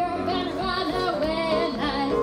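A woman singing live into a microphone, her voice gliding up and down over the band's accompaniment.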